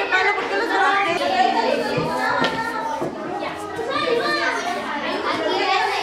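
A group of children talking and calling out over one another: lively overlapping chatter with no single clear voice.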